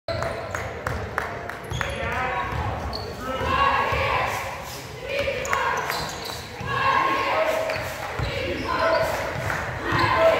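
Basketball dribbled on a hardwood gym floor, the bounces ringing in a large hall, a steady run of them at about three a second for the first two seconds. Players' and spectators' voices carry over the bouncing from about two seconds in.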